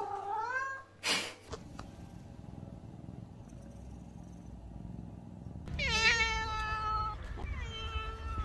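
Tabby point Siamese cat: a short rising-and-falling trilled meow (a 'purreow') at the start, then a few seconds of low, steady purring while being petted. About two seconds before the end come loud, long, drawn-out complaining meows, the cat protesting at being shut in a pet carrier.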